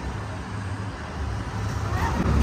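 Steady low mechanical rumble from a running fairground swing ride, mixed with general fairground noise.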